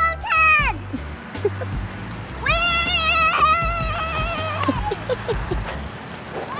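A young child's high-pitched cries: a short one right at the start, then a long, wavering call lasting about two seconds from about two and a half seconds in, over background music with a steady beat.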